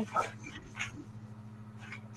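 A pause in a lecture room with a steady low electrical hum, faint scattered clicks and rustling, and a brief voice sound right at the start.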